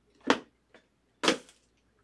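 Two short, sharp handling noises about a second apart, from hands working a cardboard trading-card box and plastic card holders.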